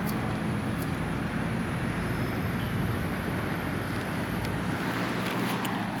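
Steady hum of road traffic, an even low rumble of passing vehicles.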